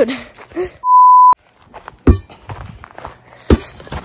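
A censor bleep: one steady, high beep about half a second long, about a second in, with the background cut out around it. A few soft knocks and rustling follow.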